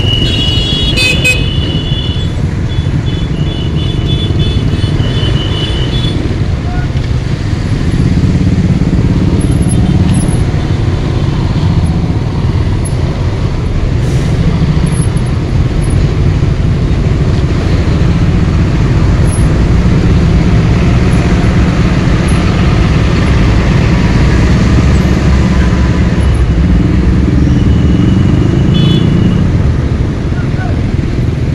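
Slow, dense road traffic of motorcycles and container trucks: a steady low engine and road rumble that grows a little louder about a quarter of the way in. Short, high-pitched vehicle horn beeps sound at the very start, again a few seconds in, and near the end.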